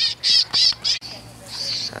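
Electronic bird-scaring device broadcasting bird calls: a fast, evenly spaced run of high-pitched, wavering calls, about three a second, that stops about a second in, followed by a few fainter chirps.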